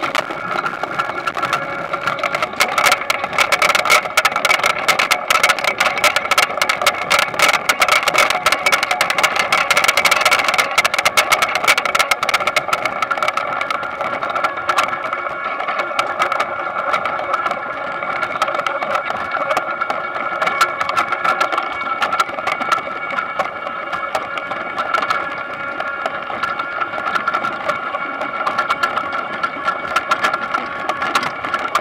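Potato harvester running: a steady mechanical drone with a dense clatter of potatoes knocking and tumbling over the rod conveyor, busiest in the first half.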